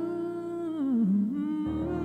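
A man's voice holding a long note with vibrato over a sustained backing chord; about a second in the note slides down and climbs back up. Near the end, new low notes come in under it.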